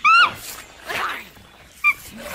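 Monkey-Men creature shrieks, built from ape and monkey calls: a loud, short, high screech that drops away at its end, then a quieter, rougher cry about a second in and a brief high squeak near the end.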